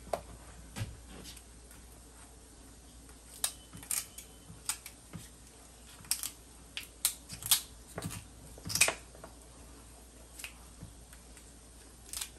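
Kitchen shears snipping through spiny lobster shell, giving irregular sharp snips and cracks in short bunches with quiet gaps between.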